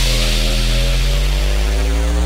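Dubstep synth bass holding one long note with a slow upward pitch bend, with the drums dropped out.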